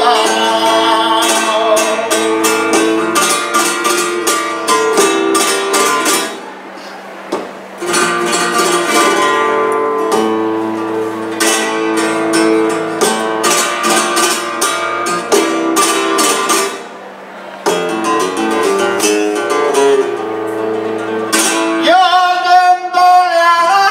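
Flamenco guitar accompanying tientos, played alone as an interlude between sung verses: strummed chords and picked note runs, easing off briefly twice, about six and seventeen seconds in. A man's flamenco singing comes back in at the very end.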